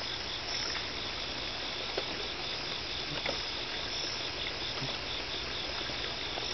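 Steady chorus of night insects, with a faint, fast, even pulsing chirp high up.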